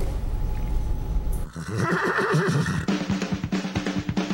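A horse whinnying, starting suddenly about a second and a half in. Music with drums comes in at about three seconds.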